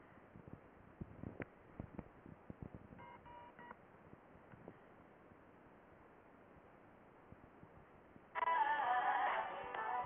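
Faint clicks, with a brief run of beeps about three seconds in; then, near the end, a Top 40 pop and hip hop internet radio stream starts playing on an iPhone, much louder, with a thin sound.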